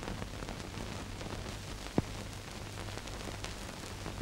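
Steady hiss and faint crackle of an old mono film soundtrack, with a low hum under it and one sharp pop about halfway through.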